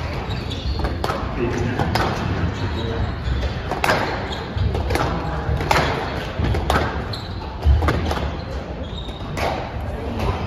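Squash rally: the ball cracking off racquets and the court walls in irregular strikes about once a second, with a heavier thump about three-quarters of the way in. Spectators' chatter runs underneath.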